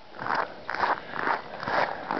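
Footsteps crunching on snow at a steady walking pace, about two steps a second.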